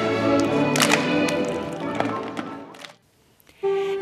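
A school choir's song with body percussion: music with sharp clap-like hits about once a second, fading out about two and a half seconds in. After a brief silence, a student string orchestra starts playing near the end.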